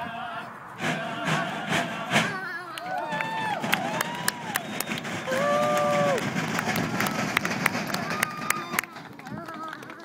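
Ute Bear Dance song: men singing to the scraping of notched-stick morache rasps, heard over loudspeakers, with a run of sharp clicks through the middle and people talking nearby.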